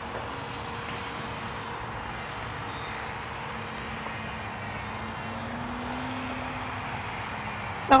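Electric motor and propeller of a radio-controlled T-28 Trojan model plane running steadily at full power through its takeoff run and climb-out, a thin whine over a steady hiss.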